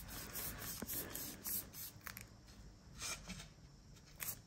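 Paintbrush spreading thick tung oil over an oak-veneered MDF board: faint, soft brushing strokes that thin out about halfway through.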